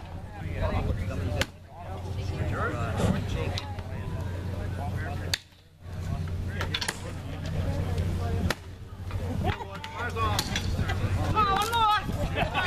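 Axe chopping a standing block of wood: sharp strikes landing about every one to one and a half seconds, over crowd voices and shouts.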